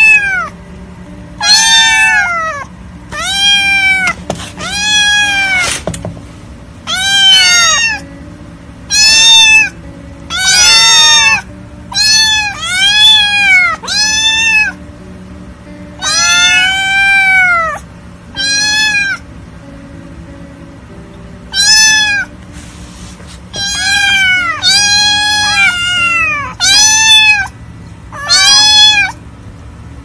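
Young kittens meowing over and over in high, arching calls, roughly one a second, sometimes overlapping, with a brief pause about two-thirds of the way through.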